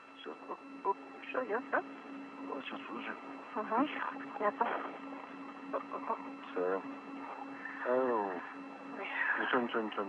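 Spacewalk radio loop: short exchanges of speech, thin and cut off at the top as over a radio link, over a steady hum that stops about nine seconds in.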